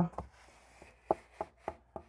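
A few faint, light clicks and knocks, spaced about a third of a second apart in the second half, from a hand handling a cardboard box of wooden pieces.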